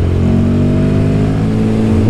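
Royal Enfield Guerrilla 450's single-cylinder engine pulling under acceleration, its pitch rising slowly and steadily.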